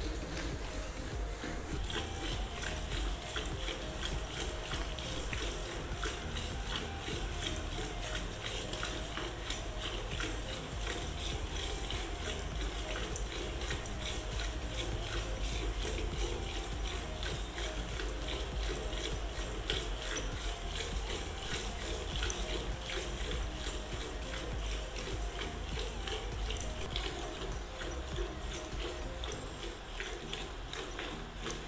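Cow being milked by hand: squirts of milk hitting a bucket in a quick, steady rhythm.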